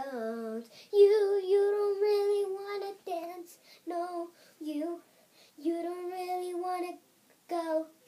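A young girl singing solo with no accompaniment, holding long notes with a slight waver between short phrases.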